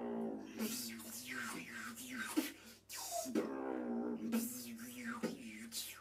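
Beatboxing: vocal percussion with sharp snare- and hi-hat-like hits, broken twice by a held, hummed pitched tone, once at the start and again for about a second past the middle.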